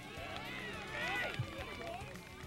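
Several voices shouting and calling out on a football field during a play.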